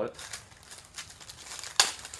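Plastic packaging on a new wallet rustling and crinkling as it is handled and unwrapped, with one sharp, louder crinkle near the end.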